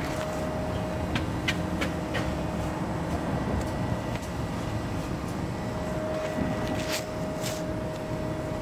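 Forklift running as it works a load: a steady mechanical hum with a faint held whine, and a few light clicks and rattles of metal.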